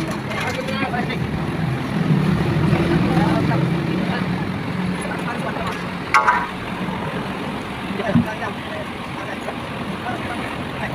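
Boom truck engine running steadily, with a sharp metallic clank about six seconds in and a duller thump about two seconds later.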